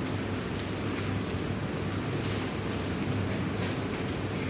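Steady hiss-like noise of a large hall with a low hum, with a few faint clicks.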